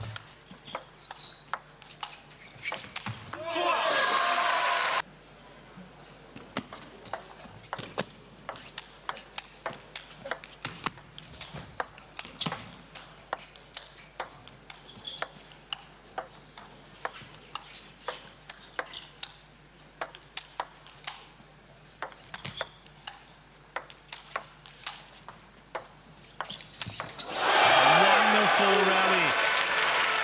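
Table tennis rallies: the celluloid ball clicking sharply and irregularly off the table and rackets, one to a few clicks a second. A burst of crowd noise about three seconds in cuts off suddenly. Loud crowd cheering and applause with shouting voices follows in the last few seconds.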